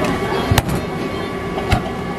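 Hand-pulled noodle dough slapped down onto a floured stainless-steel counter twice, two sharp thuds a little over a second apart, over steady kitchen background noise.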